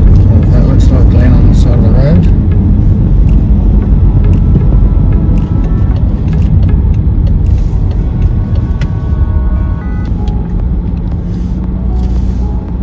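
Car cabin noise while driving: a steady low rumble of road and engine, easing a little near the end as the car slows to a stop.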